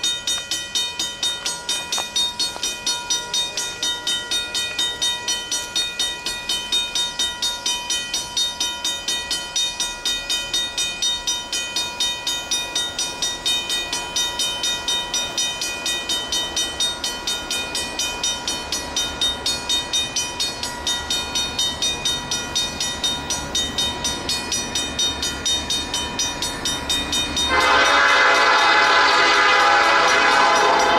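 Railroad grade-crossing bell dinging steadily, about three strikes a second, its warning activated by an approaching train. Near the end a locomotive air horn blows, loud and sustained, over the bell.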